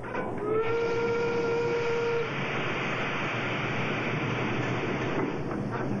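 A single long horn-like note, rising slightly as it starts and held steady for under two seconds, over a steady rushing noise that carries on after it.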